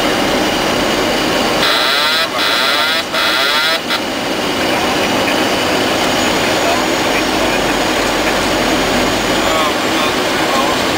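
Steady, loud flight-deck noise of a Boeing 737 on final approach: rushing air and jet engines, with voices over it. About two seconds in, a harsh, garbled sound cuts in three times for roughly two seconds.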